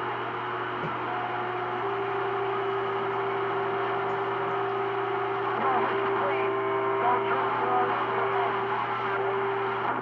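CB radio receiving on channel 28 with no clear voice: steady static hiss over a low hum, with a steady low whistle from an interfering carrier running from about two seconds in until just before the end. Faint, unreadable traces come and go under the noise: a weak, 'sloppy copy' signal.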